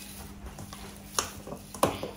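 Stiff pani puri dough being kneaded by hand in a steel bowl: faint pressing and rubbing, with two sharp knocks of the bowl, the first just past halfway and the second near the end.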